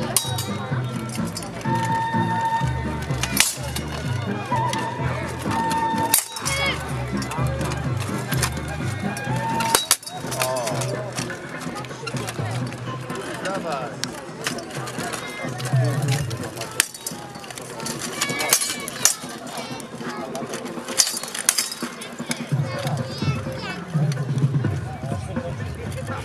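Steel longswords clanking against each other and against plate armour in irregular sharp strikes scattered throughout, over crowd voices and background music.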